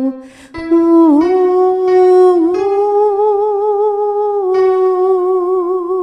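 A solo alto voice sings a long sustained 'ooh' with vibrato. The note comes in about half a second in after a brief drop, dips slightly in pitch twice early on, and is held to the end.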